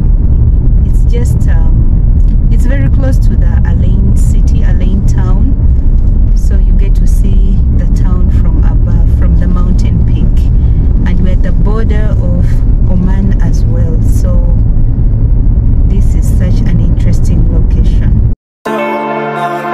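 Car driving up a mountain road: a loud, steady low rumble of engine, tyre and wind noise, with indistinct voices over it. The sound cuts off suddenly at the very end.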